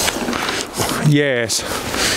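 A man's voice: a short vocal sound, a word or murmur, about a second in, after a second of noisy hiss with no pitch to it.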